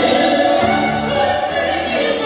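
Two female soloists singing a Ukrainian folk song in duet with an orchestra of folk instruments (domras, balalaikas and guitars), in long held sung notes over the orchestra's accompaniment.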